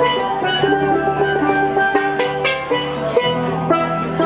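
Steel band playing live: steel pans carry a quick run of ringing notes over a drum kit and bass guitar, with a few cymbal hits.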